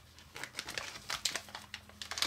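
A plastic candy pouch crinkling in the hands as it is squeezed to empty out powdered candy: a run of small, irregular crackles starting about half a second in.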